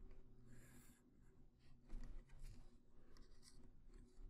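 Pencil drawing straight lines on paper along a metal ruler: several short, faint scratching strokes.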